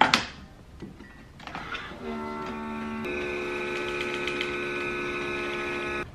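Single-serve pod coffee maker: the lid snaps shut, then about two seconds in the brewer starts up with a steady mechanical hum as it brews a chai pod, its tone shifting a second later. It cuts off suddenly near the end.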